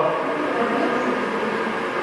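Steady background hiss of room noise with no clear voice, level and unchanging.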